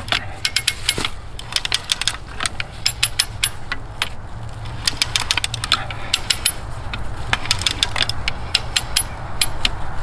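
Hand-lever winch being pumped, its ratchet and pawl clicking in quick metallic runs with each stroke of the lever as it winches a rope tighter under several hundred pounds of load.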